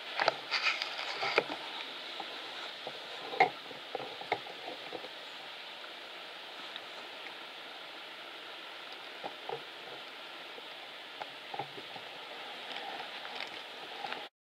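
Steady background hiss with scattered light knocks and clicks, the loudest about three and a half seconds in: handling noise from a camera being carried and turned.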